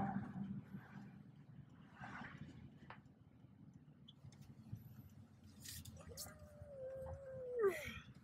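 A dog in the car whines once, a long held whine starting about six seconds in that drops in pitch at its end, over the low rumble of the car driving.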